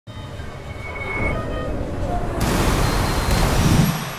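A swelling rush of noise over a low rumble that grows louder, turns brighter about halfway through and peaks just before it drops away near the end.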